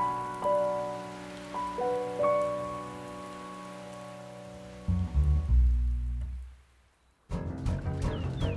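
Rain falling steadily under a slow, gentle score of single struck notes. About five seconds in a deep low rumble takes over and fades almost to silence, then louder music starts abruptly near the end.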